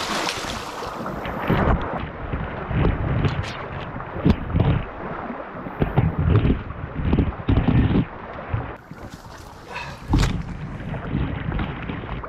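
Wading through a fast, thigh-deep creek: rushing water with irregular sloshing surges as legs push through it, a few sharp knocks, and wind buffeting the microphone.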